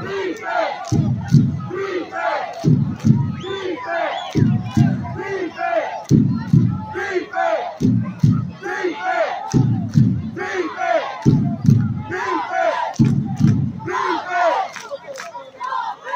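Football crowd in the stands yelling and chanting loudly, with a low beat coming back about every second and a half to two seconds. The crowd is loud enough that it won't quiet down.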